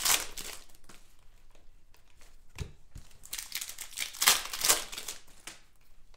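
Foil trading-card pack crinkling as it is torn open and handled: one burst of crackle at the start, then a run of crinkles past the middle.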